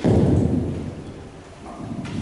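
Microphone handling noise: a sudden loud low thump and rumble that fades away over about a second.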